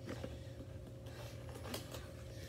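Faint chewing of a mouthful of food, a few soft crunches and wet clicks, over a low steady hum.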